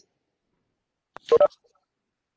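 A faint click, then a short electronic beep made of a few mixed tones, about a second and a half in.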